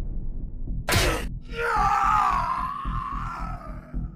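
A brief noisy sound effect about a second in, then a man's long scream, "Aaahhh!", voiced by an actor as he is kicked, over background music with a steady beat.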